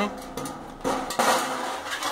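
Sheet-metal ash drawer of a barbecue oven being slid in its slot in the masonry, metal scraping for about a second from a little before the middle.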